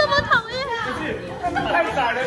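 Several people's voices chattering and talking over one another.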